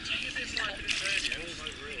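Indistinct chatter of other bathers across the open-air geothermal pool, with water lapping and splashing close by.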